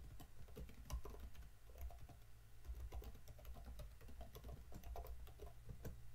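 Typing on a computer keyboard: a quiet, irregular run of key clicks.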